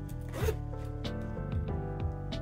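The metal zipper of a small fabric pouch being unzipped in one short pull, about half a second in. Background music plays throughout.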